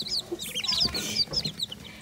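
Newly hatched ducklings and chicks peeping in a brooder: a run of short, high, falling peeps, several a second, with soft rustling as a hatchling is handled.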